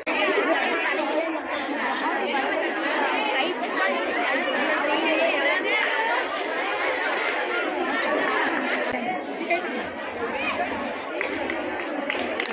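A crowd of schoolchildren chattering, with many voices overlapping at once.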